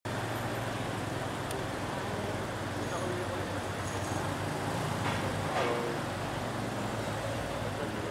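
Street traffic noise, with a car running as it drives slowly past, and people talking in the background.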